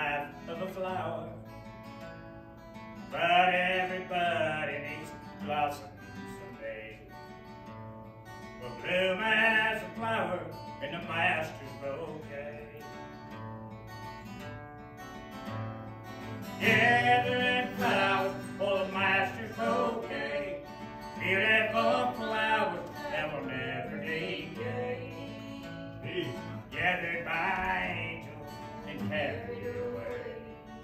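A man singing a gospel song to his own strummed acoustic guitar. Sung phrases come every few seconds, with the guitar carrying on between them.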